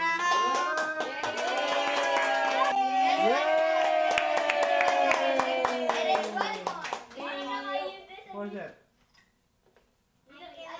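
A group singing a birthday song to hand clapping and a melodica, ending on one long held note, followed by short shouts and cheers about seven seconds in.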